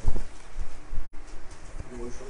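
A silk saree being shaken out and spread over a table, its handling heard close on a clip-on microphone, with a loud thump at the start. The sound cuts out for an instant about a second in, and a faint low pitched call comes near the end.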